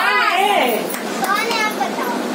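A girl speaking in a high voice.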